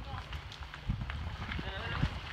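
Men's voices and scuffing footsteps on gravel as a group pushes a boat on its trailer by hand, with a low rumble growing louder about a second in.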